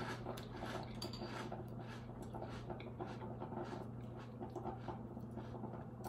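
Close-up chewing of a mouthful of crunchy cereal in milk: a quick, irregular run of small crunches over a steady low hum.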